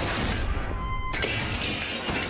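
A huge boulder crushing a car: a crash at the start, then a second crash about a second in, trailing off into crunching metal and shattering glass.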